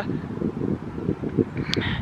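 Wind buffeting the camera microphone: an uneven low rumble that comes and goes in gusts.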